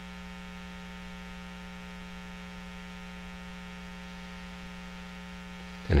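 Steady electrical hum at one unchanging pitch, with a stack of evenly spaced overtones, at a constant level. A man's voice starts right at the end.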